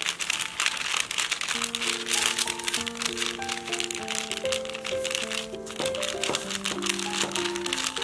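Baking paper crinkling and rustling under a wooden rolling pin as cookie dough is rolled flat between the sheets, in a steady run of crackly strokes. A light background melody plays throughout.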